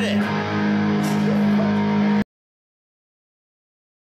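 Electric guitar through an amplifier playing sustained notes, cut off abruptly a little over two seconds in.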